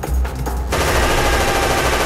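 Rapid gunfire from a shootout: a few separate shots, then a dense burst of rapid-fire shots beginning just under a second in, over a low drone of background music.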